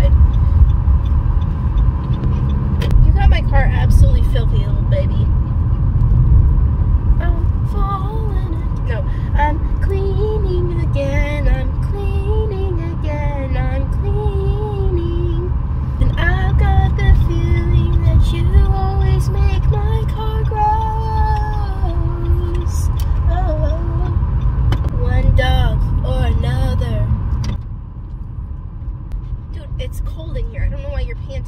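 Steady low rumble of a moving car heard from inside the cabin, dropping sharply near the end. A woman's voice with long drawn-out notes, like singing, runs over it through the middle.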